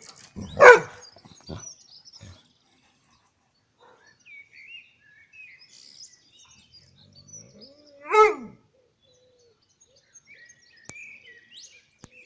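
A dog barks twice, once near the start and again about eight seconds in, the second bark rising and then falling in pitch. Small birds chirp faintly in between.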